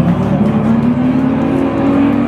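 A hardcore band playing loud and live: distorted electric guitars hold a sustained note that bends slightly upward, over drums and cymbals.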